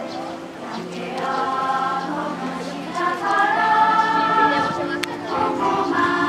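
A group of schoolchildren singing together as a choir, holding long notes that change every second or two.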